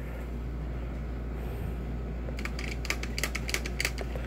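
Plastic clicking of a Chomping Tyrannosaurus Rex toy's jaw mechanism as it is worked by hand, a quick irregular run of about a dozen clicks in the second half, over a steady low hum. The jaw action is weak: it doesn't chomp very well.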